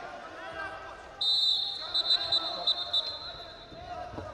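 Referee's whistle: one long shrill blast starting about a second in, pulsing several times before it fades, stopping the action. Crowd voices run underneath.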